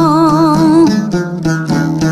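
Khmer chapei dong veng music. For about the first second a voice holds a wavering note over a steady low drone, then the plucked strings of the long-necked lute take over with a quick run of notes.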